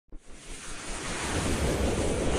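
Intro sound effect: a rushing whoosh that swells up from silence at the start and builds steadily louder.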